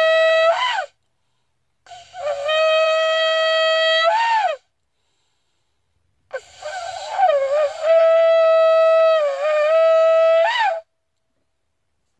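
Shofar sounded in three long blasts, each ending in a short upward flick of pitch. The first is already sounding and stops about a second in. The third, about four seconds long, is the longest and wavers in pitch in its middle.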